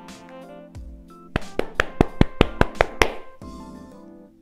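Gloved hands clapping about nine times in a quick, even run, about five claps a second, over soft background music with sustained notes.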